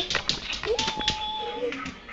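A small dog whining: one high note, held level for about a second.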